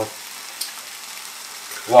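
Cauliflower rice sizzling steadily in a frying pan.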